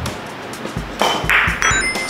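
Carom billiard balls struck by a cue about a second in, with the click of ball on ball. Near the end, brief high chime tones sound, an added effect marking a scored point.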